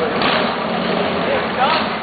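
Busy street sound: people chattering nearby over steady car traffic.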